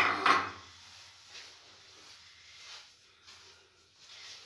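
A ceramic bowl clinks once at the start. Then come faint, soft rubbing and light knocks as hands work margarine in a wide earthenware mixing dish.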